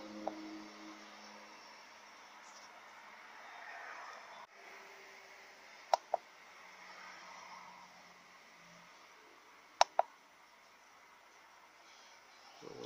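Keypresses on a handheld OBD-II scan tool: a short, sharp click at the start, then two quick pairs of clicks a few seconds apart as its menus are stepped through, over a faint hiss.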